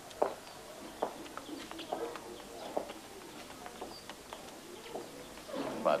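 Pigeons cooing and small birds chirping in the background, with footsteps on a stone floor about once a second.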